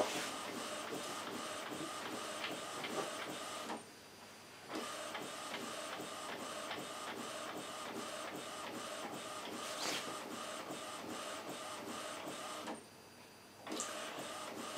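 Epson WorkForce WF-2010W inkjet printer printing, its print head carriage shuttling back and forth across the page in steady passes, with two short pauses, about four seconds in and again near the end. It is printing blocks of colour to clear freshly loaded sublimation ink through the nozzles.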